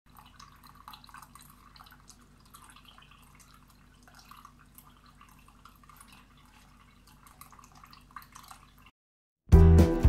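Small tabletop fountain: water trickling and dripping faintly and unevenly into a foamy basin. The water cuts off near the end and loud music starts.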